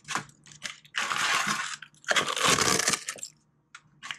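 Dry, oven-baked eggshells crackling and crunching as they are pressed down by hand in a plastic blender cup. There are two longer crunches, about a second in and about two seconds in, among scattered small cracks.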